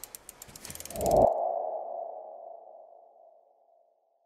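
Logo-ident sound effect: a quick run of light clicks, then a ringing ping-like tone that swells about a second in and fades away over the next two seconds.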